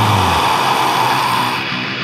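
Heavy metal music in a break: the drums and bass stop within the first half second, leaving a distorted electric guitar ringing on and slowly fading.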